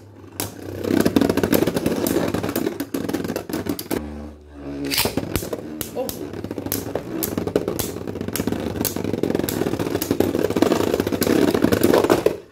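Two Beyblade Burst spinning tops whirring in a plastic stadium, with rapid clicking clacks as they collide and scrape against each other and the stadium wall.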